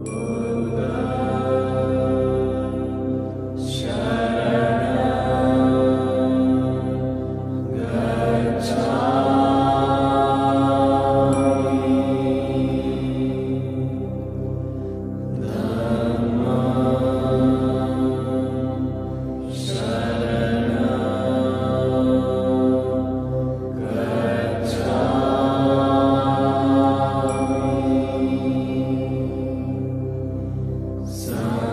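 A chanted mantra set to music over a steady low drone, with a sung phrase starting about every four seconds.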